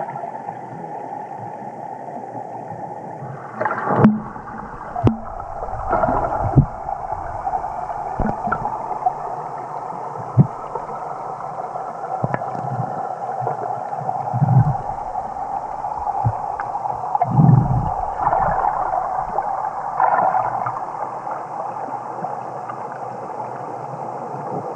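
Muffled underwater sound picked up through a waterproof camera submerged in a pool: a steady hum with scattered sharp knocks and a few dull thumps.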